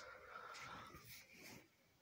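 Near silence: room tone with faint rustling that stops about a second and a half in.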